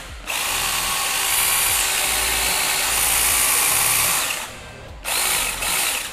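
Cordless battery motor of an Orion GCS-001E telescopic pruning saw head running with no load as the trigger is held, at a steady even pitch for about four seconds. It stops, then runs again in a second short burst of under a second.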